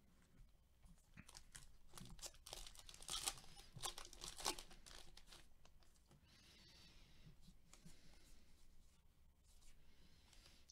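A baseball card pack's wrapper being torn open and crinkled: a quick run of quiet rips and crackles between about two and five seconds in, then softer rustling as the cards are handled.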